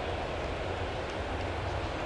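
Steady ballpark ambience: a low, even rumble and hum from a sparse stadium crowd, with no distinct calls or impacts.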